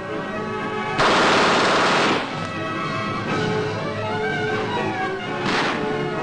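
A burst of submachine gun fire about a second long, starting about a second in, with a fainter shot near the end, over background music.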